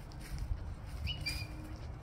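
A small bird chirping once, a short high two-note call, the second note lower, about a second in, over a low rumble.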